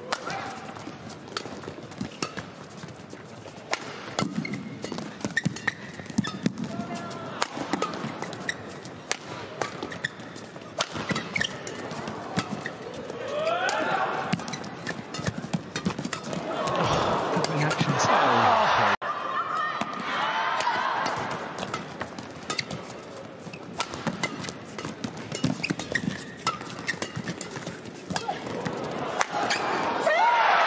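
Badminton rally: rackets striking the shuttlecock in quick, sharp hits, with short squeaks from shoes on the court. Arena crowd noise swells twice in the second half.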